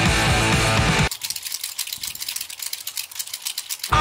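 Guitar-driven rock music cuts off about a second in, leaving a rapid run of clicks from a hand-held mechanical tally counter pressed over and over to count birds. The music comes back at the very end.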